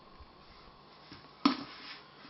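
A single sharp knock about one and a half seconds in, followed by a brief scraping rustle, from kitchen utensils as flour is measured into a mixing bowl.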